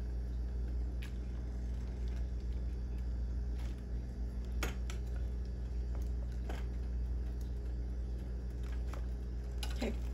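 A spatula knocking and scraping against a nonstick frying pan several times, sharp short clicks spread out, as ramen and vegetables are turned in the broth. A steady low hum runs underneath.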